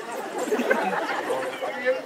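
Indistinct, overlapping voices talking, with no single clear speaker.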